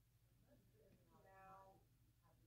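Near-silent room tone with a low hum, broken about a second in by one short, faint, pitched vocal sound lasting about half a second.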